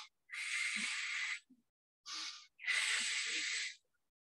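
A woman breathing deeply and audibly while holding a curled-up back stretch: two long, hissy breaths of about a second each, with a short breath between them.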